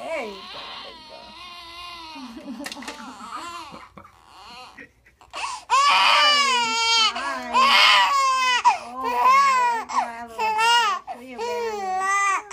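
Newborn baby crying from the pain of a vaccine injection just given in the leg: soft, broken fussing at first, a short pause near the middle, then loud, long wails from about halfway through.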